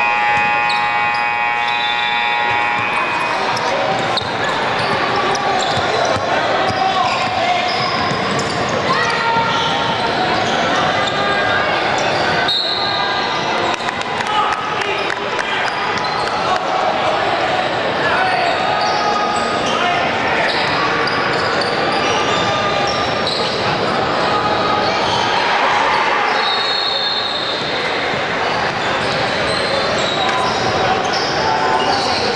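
Basketball dribbled and bouncing on a hardwood gym floor, amid a steady mix of shouting players and spectators that echoes around the large hall.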